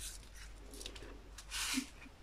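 Tiny square resin diamond-painting drills ticking and sliding about in a clear plastic tray, with a short hissing swish about one and a half seconds in.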